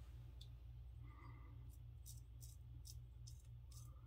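A few faint, short scrapes of a Gem Damaskeene safety razor cutting lathered stubble against the grain, over a low steady hum.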